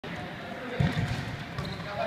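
A football kicked and bouncing on the hard floor of a sports hall, a short cluster of thuds just under a second in, with the hall's echo behind them.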